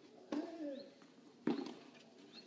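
Tennis rally: a racket strikes the ball twice, a little over a second apart, each hit followed by a short vocal grunt from the player.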